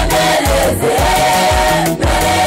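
A church choir singing a gospel song over a steady drum beat, holding one long note for about a second in the second half.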